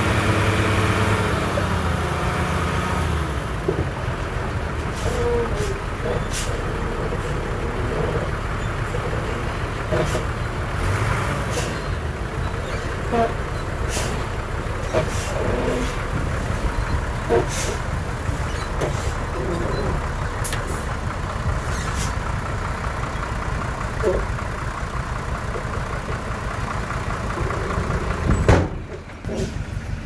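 Heavy dump truck's diesel engine, revved for the first few seconds and then running at a steady rumble while the tipper bed rises, with scattered knocks and clatter. A loud thump comes shortly before the end.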